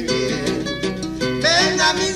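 Acoustic guitars playing an instrumental passage of a Peruvian criollo song: a plucked melody over a stepping bass line, with a higher wavering melody line coming in about one and a half seconds in.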